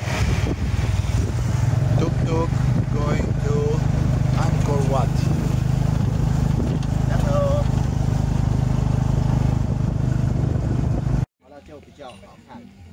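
Engine and road noise heard from inside a moving tuk-tuk with plastic side curtains: a loud, steady low drone. Voices speak briefly a few times over it. The sound cuts off suddenly near the end.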